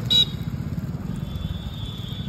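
A low, steady rumble like an idling motor vehicle engine, with a short, sharp, high toot at the start and a thin, steady, high-pitched tone from about a second in.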